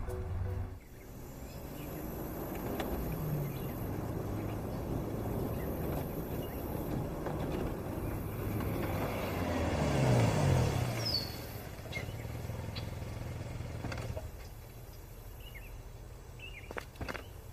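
A Mercedes-Benz SUV driving slowly up and pulling to a stop, its engine and tyre noise steady, swelling to its loudest about ten seconds in, then dropping away around fourteen seconds in as it comes to rest.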